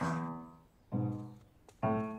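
Background music: low piano notes struck about once a second, three in all, each fading away before the next.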